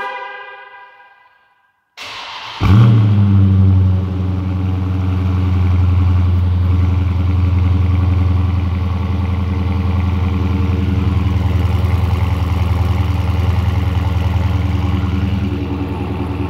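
2023 Dodge Charger Scat Pack Daytona's 6.4-litre (392) HEMI V8 remote-started: after a fading tone and a short pause it cranks about two seconds in, fires with a loud flare of revs, then settles into a deep, steady idle through the exhaust.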